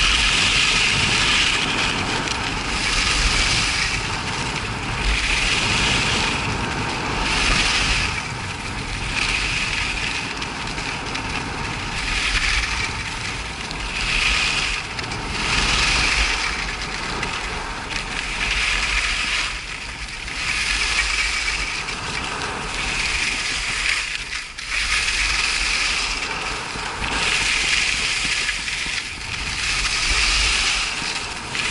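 Skis carving down hard-packed groomed snow: a scraping hiss that swells with each turn, about one every one and a half seconds.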